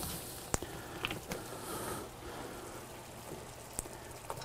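Faint hiss of a soy, mirin and dashi sauce heating toward a simmer in a pan, with a few light clicks scattered through it.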